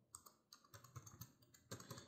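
Faint keystrokes on a computer keyboard: a short run of typing as a word is entered, with several clicks close together near the end.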